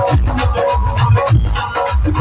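Live Punjabi devotional bhajan band playing an instrumental passage between sung lines: a driving hand-drum beat, several strokes a second, under sustained keyboard melody, amplified through PA speakers.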